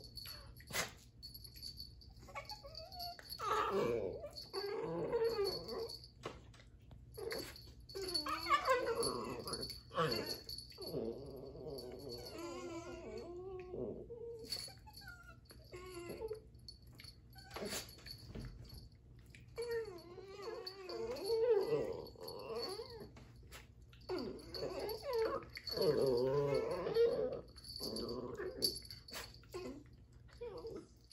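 Two dachshunds play-fighting, growling and whining at each other in several bouts of a few seconds each, with quieter stretches in between.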